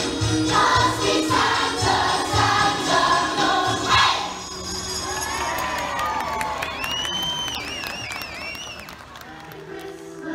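A children's choir singing over a backing track with a steady beat; the song ends about four seconds in and the crowd cheers, with high wavering shrieks from children near the end.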